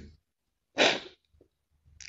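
A crying woman's single short, sharp sobbing intake of breath, about a second in.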